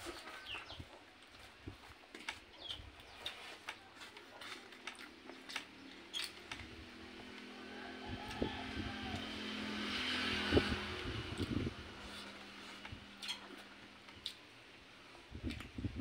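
Fingers mixing rice on a steel plate, heard as faint scattered clicks and scrapes of metal. Near the middle, a low motor hum swells and then fades.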